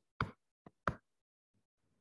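Two light knocks about 0.7 s apart, with a fainter tick between them: a stylus tapping on a tablet while drawing on a slide.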